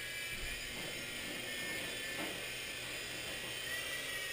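Blade mCX coaxial micro RC helicopter hovering: its small electric motors and rotors make a steady high-pitched whine whose pitch lifts slightly near the end as the throttle is nudged.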